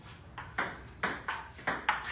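Table tennis ball clicking off the table and the paddles in a quick serve-and-return rally, about six sharp clicks in under two seconds.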